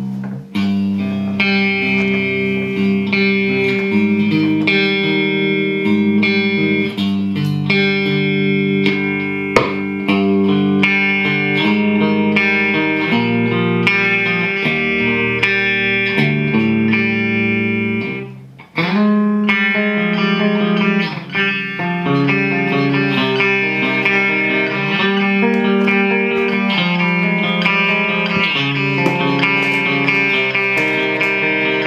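Ibanez RGT42 electric guitar played on the clean preset of a Rocktron Piranha all-tube preamp, through a MosValve power amp into a 2x12 cabinet with Celestion G12T-75 speakers. Ringing chords are played, with a short break a little past the middle before the playing picks up again.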